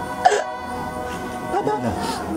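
A woman sobbing over steady background music: a short catching cry near the start, then a longer cry that falls in pitch near the end.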